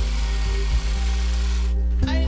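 Handheld bag-closing sewing machine running as it stitches a filled woven sack shut, stopping abruptly near the end, with background music underneath.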